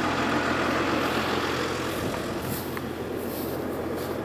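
Valtra tractor's diesel engine idling steadily, close by.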